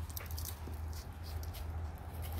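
Faint rustling of dry brush and leaves with a few light clicks, over a steady low rumble on the microphone.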